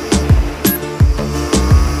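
Background electronic music with a heavy beat: deep kick drums about every third to half second over a sustained bass line, with sharp percussion hits.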